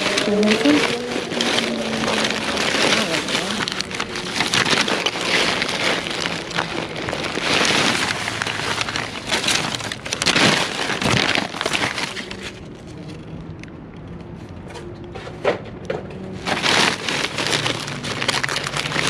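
Plastic trash bags crinkling and rustling as gloved hands dig through them, with a quieter lull about two-thirds of the way through before the rustling resumes.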